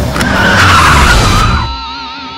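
Car tyres screeching in a skid, loud for about a second and then fading away.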